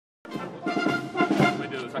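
Traditional Bavarian brass and wind band playing, softly at first with voices of people talking over it, swelling louder near the end.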